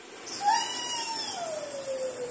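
A baby's long, high-pitched vocal call that rises briefly about half a second in, then falls slowly in pitch.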